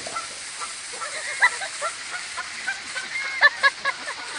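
Canada goose honking aggressively in a series of short calls while charging with its wings spread, loudest about a second and a half in and in a quick cluster near the end.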